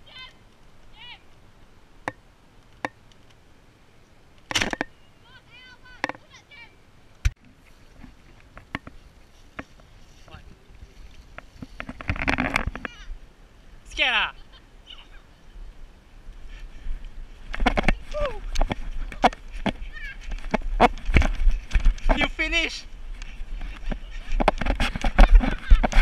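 Children's shouts and shrill calls during outdoor play, with a few sharp clicks or pops in the first seconds. From about 17 s on, a busy stretch of rumbling and knocks from a moving camera mixes with voices and laughter.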